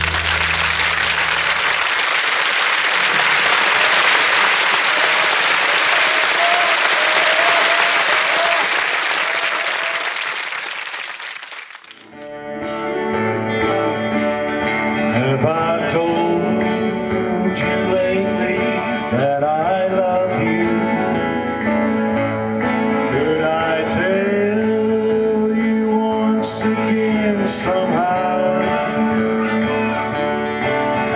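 Audience applause for about the first twelve seconds, fading away. Then a country song starts: a strummed acoustic guitar and a man singing.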